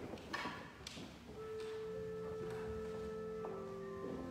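Pipe organ starting to play about a second and a half in: steady held chords that don't fade, moving to a new chord near the end. A few short rustles come before it.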